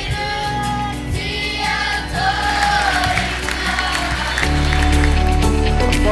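Children's kapa haka group singing together, with long held notes. About four and a half seconds in, a steady bass music bed comes in beneath the singing.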